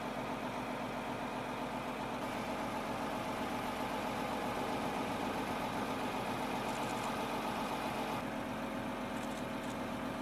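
A steady mechanical drone, like an engine idling, with a few constant tones over a hiss and no change in pitch or rhythm. Its upper hiss changes slightly about two seconds in and again about eight seconds in.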